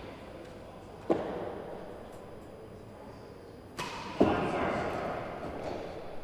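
Real tennis ball struck and bouncing in an enclosed, echoing court: a knock about a second in, then the louder crack of the serve being hit about four seconds in, each ringing on in a long echo.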